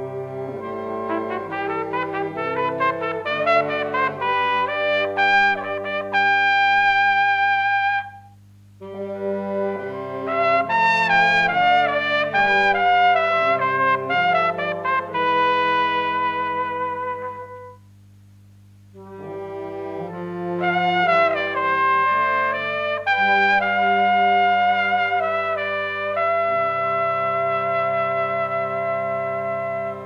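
Two trumpets playing a tune together in three phrases. Each phrase ends on a long held note, with a short pause between phrases.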